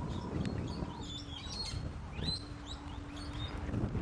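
Small wild birds chirping in the background: short, quick high calls in the first half, over a steady low rumble.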